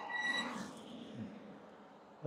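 Quiet road noise of an e-bike rolling on pavement: a soft hiss of tires and air that fades down, with a faint high whine in the first half second.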